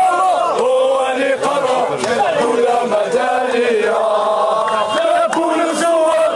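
A crowd of young men chanting protest slogans in unison.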